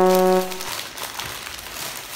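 A held brass-sounding musical note ends about half a second in, then a plastic courier bag crinkles and rustles as it is pulled open.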